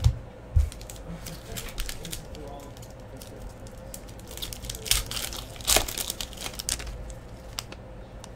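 Trading card pack wrapper crinkling and tearing in the hands, in bursts of crackle from about halfway in until near the end. A couple of low thumps come at the very start.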